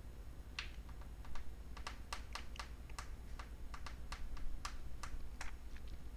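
Faint computer keyboard typing: a string of short, irregular key clicks.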